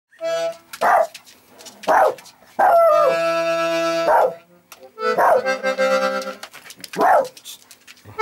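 A bandoneon plays held reed chords. They are broken about five times by short, loud bursts that drop in pitch.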